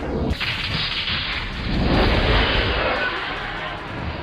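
A whooshing, rumbling sound effect that swells to its loudest about two seconds in and then fades, used as a transition sting.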